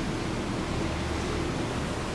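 Steady hiss with a low rumble beneath it: the room tone and recording noise of the room, with no other sound standing out.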